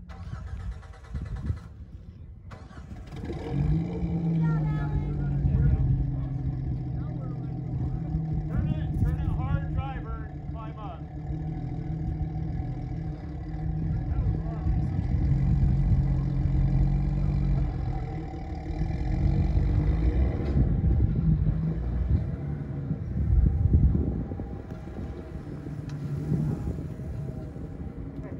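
Engine of a rock-crawling off-road vehicle running under load as it works up a sandstone ledge, revving up and easing off several times, with onlookers' voices calling in the background.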